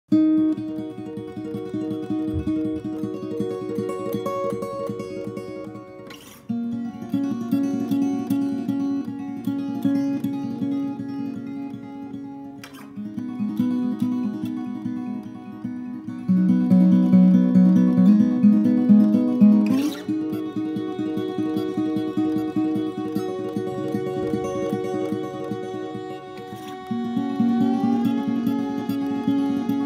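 Acoustic guitar picking a repeating pattern of notes, the instrumental intro of a folk song before any singing.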